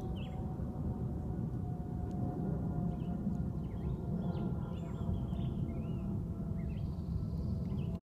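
Small birds chirping repeatedly, with a steady low rumble on the microphone underneath.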